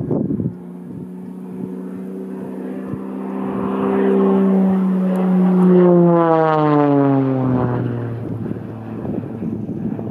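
Extra 300L aerobatic plane, its six-cylinder Lycoming engine and propeller droning as it flies overhead. The sound grows louder, peaks just past the middle, then drops in pitch and fades as the plane passes.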